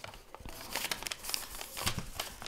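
Sheet of origami paper crinkling and rustling as it is pressed along its creases and collapsed into a four-flap triangle, with a string of short crackles.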